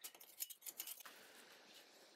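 Large knife cutting and shaving a palm-midrib chair frame: a few quick, sharp cuts in the first second, then a short, faint scraping stroke.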